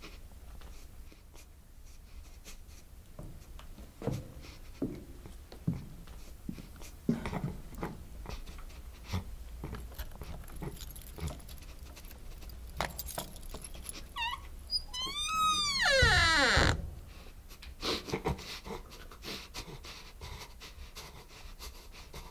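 A door creaking slowly on its hinges: one long squeal about two-thirds of the way in that rises briefly, then slides steeply down in pitch. Faint scattered creaks and knocks come before and after it.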